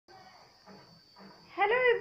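A woman's voice starts speaking about one and a half seconds in, high-pitched and lively, after a faint, almost quiet start. A steady high hiss runs underneath.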